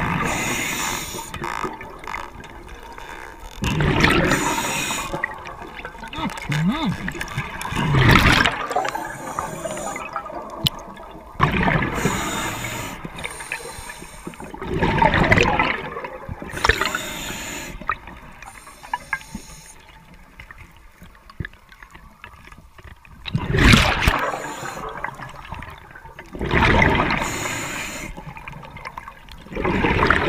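A scuba diver breathing through a regulator underwater: loud rushing gurgles of exhaled bubbles come every three to four seconds, with quieter breathing between.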